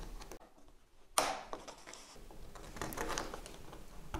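Faint handling of 3D-printed plastic parts as a clip is pushed into a hexagonal tile base to hold its magnets, with one sharp click about a second in and small scattered ticks after.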